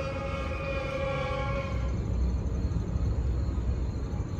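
New York City outdoor ambience: a steady low rumble of distant traffic, with a long, steady pitched tone held over it that fades out about halfway through.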